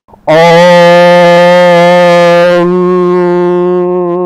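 A conch shell (shankha) blown in one long, loud, steady note that begins a moment in and is held, wavering slightly in the second half.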